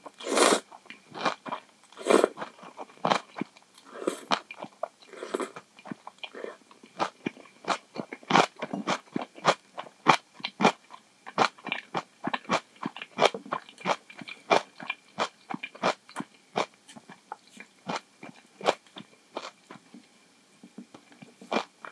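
Close-miked eating of instant miso ramen noodles with kimchi: a loud slurp of noodles at the start and a few more in the next few seconds, then steady chewing as short clicks, about two or three a second.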